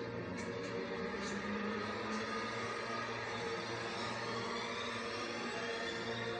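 A steady droning sound from the TV episode's soundtrack, made of several sustained tones that hold and shift slowly, with a few faint ticks early on.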